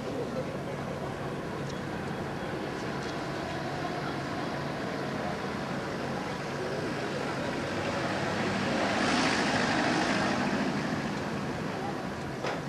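Street traffic noise, with a road vehicle passing close and growing louder for a few seconds, starting about eight and a half seconds in and fading before the end. Crowd chatter underneath.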